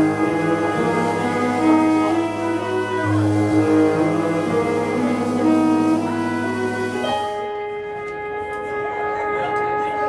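Jazz big band playing live, the horns holding long sustained chords that change every second or so. About seven seconds in, the sound turns duller and softer.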